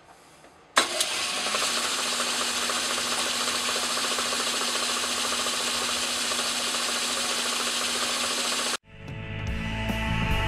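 Atlas Craftsman metal lathe switched on about a second in, spinning up and then running steadily with a hum. Near the end the sound cuts off abruptly and rock music takes over.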